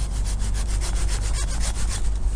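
Hand pruning saw cutting through a living serviceberry branch in quick, even strokes. This is the careful final cut close to the trunk, made after a small relief cut so the bark does not tear.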